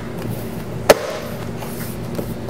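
A single sharp snap about a second in, a plastic trim clip on a BMW E84 X1 door panel being pressed home, over a faint steady hum.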